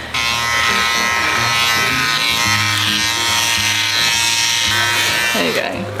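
Electric shaver buzzing steadily as a man shaves his head. Background music plays underneath.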